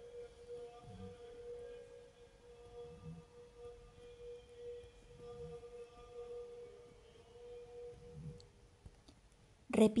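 Soft, slow background music: a single held tone with fainter tones above it and gentle low swells. A woman's voice begins speaking near the end.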